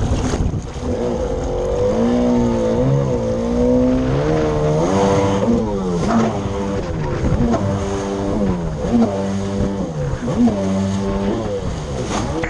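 Yamaha SuperJet stand-up jet ski's two-stroke engine under way, revving up and down over and over from about two seconds in, with the rush of water spray.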